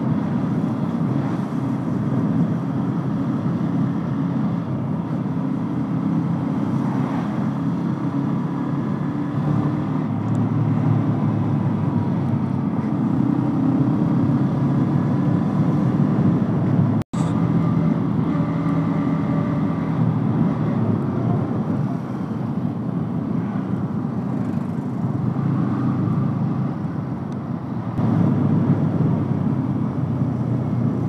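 Motorcycle engine running under way at town speed, its pitch stepping up and down with the throttle, over a steady rush of riding wind. The sound drops out for an instant about 17 seconds in.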